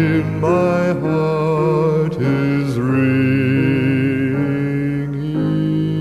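Slow hymn music with long held notes that waver with vibrato, changing pitch every second or two.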